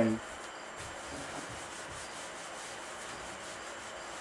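Whiteboard eraser wiping marker writing off a whiteboard: a steady dry rubbing with faint repeated strokes.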